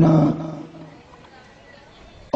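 A man's amplified voice holding out the last syllable of a word, trailing off within the first second, then a pause with only faint room noise.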